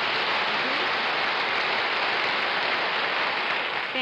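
Studio audience applauding, a steady round of clapping.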